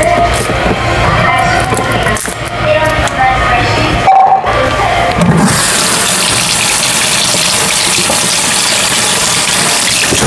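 Background music for the first few seconds, then a kitchen tap running steadily into a sink from about five seconds in.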